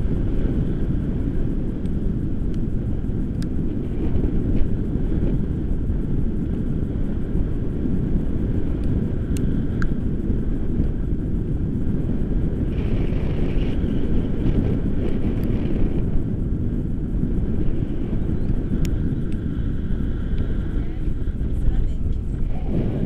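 Wind rushing over an action camera's microphone in flight under a tandem paraglider: a steady, dense low rush.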